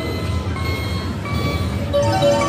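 Video slot machine respinning its hold-and-spin bonus reels, giving a few short, steady electronic tones over a steady low rumble of casino background noise.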